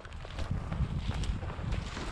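Dry dead grass swishing and crackling against legs and camera while walking through a tall grass field, with wind rumbling on the microphone.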